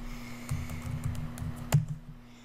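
Typing on a computer keyboard: a quick run of keystrokes entering a web address, with one louder key press near the end. A steady low hum runs underneath.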